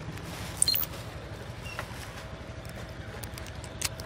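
Motor scooter engine idling with a low steady hum, with a few light clicks on top, the sharpest about two-thirds of a second in.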